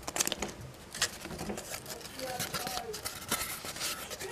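Cardboard packing pieces being handled and pulled apart by hand: a run of light scrapes, rustles and taps.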